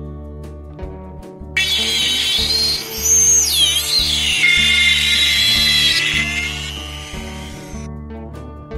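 Small rotary multi-tool drilling a tiny hole in a thin wooden dowel: its high motor whine starts suddenly about a second and a half in, dips and falls in pitch, then runs steady before cutting off near the end, over background music.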